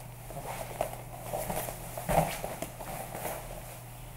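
Jiu-jitsu gi cloth rustling and a body shifting and rolling back on a grappling mat, with a few soft thumps, the most distinct about two seconds in.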